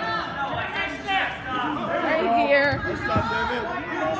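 Indistinct voices of several people talking over one another, with the echo of a large gym hall.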